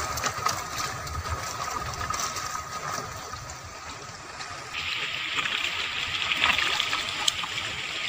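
Fast-flowing water rushing and splashing along a narrow channel past wooden stakes, with a steady hiss that grows brighter about five seconds in.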